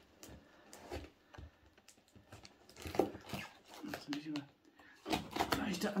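Hands picking at and tearing packing tape on a taped cardboard parcel, with crinkling and scattered small clicks and knocks against the box.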